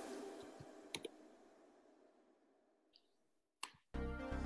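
Sharp clicks at a computer during a web search: a close pair about a second in, a faint tick, and another click near the end. Music fades away to near silence before them and comes back at the very end.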